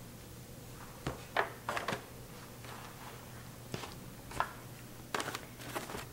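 Thin aluminium foil loaf pans crinkling and knocking on a countertop as they are handled: a scattered string of short crinkles and taps, over a low steady hum.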